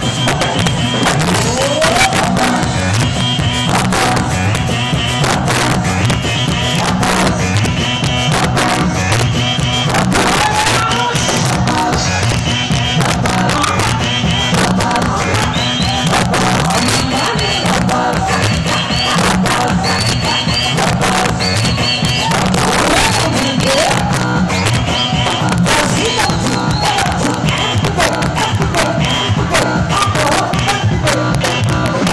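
Live salegy band music played loudly through the PA, with a steady driving beat, and a crowd cheering along.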